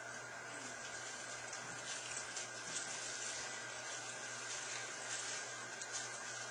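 Quiet church room tone with a steady low hum and a faint high tone, with soft rustling as the congregation turns Bible pages to the passage just announced.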